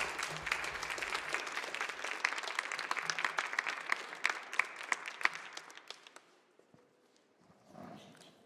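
Conference audience applauding at the end of a speech, the clapping thinning out and dying away about six seconds in.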